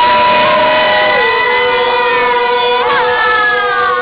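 A group of Dawan (Atoni Pah Meto) voices chanting together during communal field clearing, holding long notes at several pitches at once. One voice steps down in pitch about a second in, and a sliding call rises and falls near the end.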